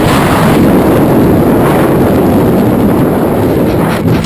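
Loud, steady rushing wind of a skydiving freefall buffeting the camera microphone.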